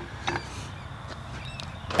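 A pause with only faint, steady outdoor background noise and a couple of faint small clicks near the end.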